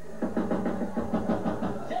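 Studio audience cheering and laughing, a dense swell of many voices that starts just after the beginning and fades near the end.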